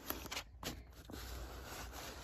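Scissors cutting along the seam of a cardboard box: a few faint snips and clicks in the first second, then quieter.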